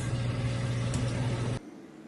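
A steady mechanical hum with a low drone under a wide hiss, which cuts off abruptly about a second and a half in.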